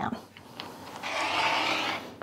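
Rotary cutter blade slicing through the layered fabric of a sewn strip set, run along an acrylic ruler on a cutting mat: a steady cutting sound that starts about a second in and lasts about a second.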